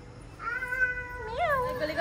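A cat meowing: one long drawn-out meow that starts about half a second in and rises and falls in pitch near its end.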